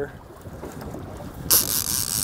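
Wind noise on the microphone out on open water. It is quiet at first, then a sudden loud rush of wind comes in about one and a half seconds in.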